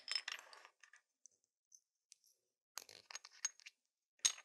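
Small nail crystals clinking and rattling against a clear plastic pot as they are picked through. The clicks come in two short clusters: one at the start and another about three seconds in.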